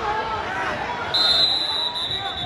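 A referee's whistle gives one steady, high blast starting about a second in and held, stopping the youth wrestling bout, over spectators' voices.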